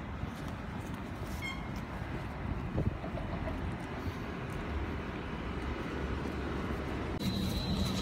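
Steady low rumble and hiss of a moving vehicle, with a short faint beep about a second and a half in and a soft thump a little later. A faint high steady tone comes in near the end.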